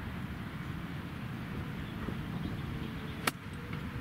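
A golf club striking a golf ball in a full approach swing: one sharp, short click about three seconds in. A steady low rumble runs underneath.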